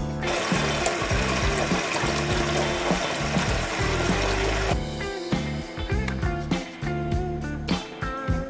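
Tap water pouring from a faucet into a cooking pot, a steady rushing splash that stops a little over halfway through. Background music plays throughout.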